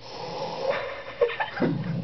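Domestic cat growling: a low, steady, motorcycle-like rumble that sets in about one and a half seconds in, after a second or so of shorter, higher animal sounds.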